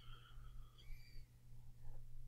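Faint room tone with a low steady hum.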